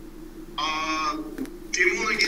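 A man's drawn-out hesitation sound, a level "uhh" of about half a second, over a faint steady low hum. Softer breathy vocal sound starts near the end.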